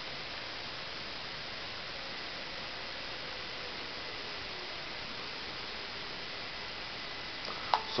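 Steady low hiss with a faint whine of a small robot's DC gear motors driving it across carpet, the whine drifting slowly in pitch as the robot turns.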